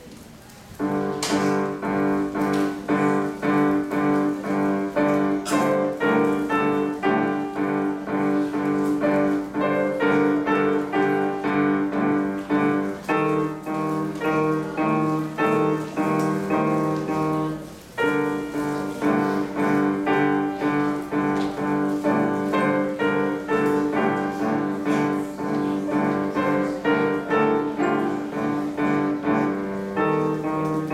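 Boston grand piano playing a classical piece in a steady, even pulse of notes. It starts about a second in and breaks off briefly just past the middle before carrying on.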